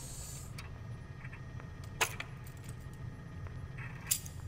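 A low steady hum, with a short hiss at the start and a few sharp clicks, the loudest about two seconds in.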